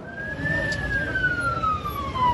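Emergency vehicle siren wailing, one slow sweep that rises briefly and then falls steadily.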